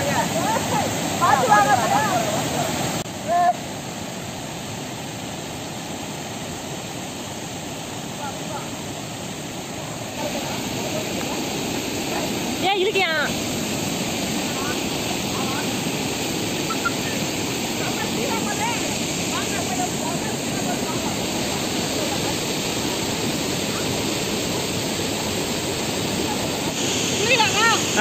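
Shallow river water rushing over rock slabs and small cascades, a steady rushing noise that drops somewhat about three seconds in and picks up again about ten seconds in. Brief voices call out near the start and about halfway through.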